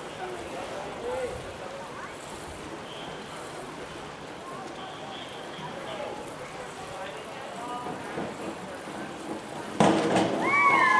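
A diver entering the pool water feet-first from a 1 m springboard dive, a sudden splash near the end. Before it, faint chatter of voices around the pool.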